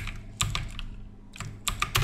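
Computer keyboard keystrokes: a few spaced key taps, then a quicker run of presses near the end.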